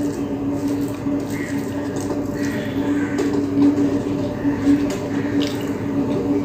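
Fingers squishing and mixing cooked rice with red spinach fry on a plate, soft wet squelches with a few sharper clicks, over a steady low hum.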